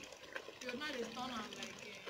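Quiet voices talking faintly in the background, with a low, even hiss beneath them.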